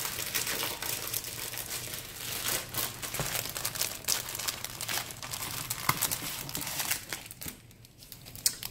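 Clear plastic packaging crinkling as it is opened and handled, a dense run of crackles that dies down near the end.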